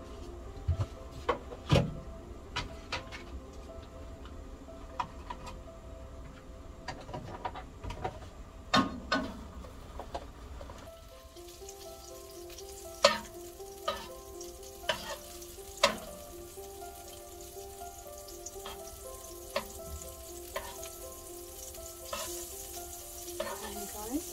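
Wooden spatula stirring butter in a nonstick frying pan, knocking against the pan in scattered sharp clicks. About halfway in, a faint sizzle sets in as the butter melts and heats.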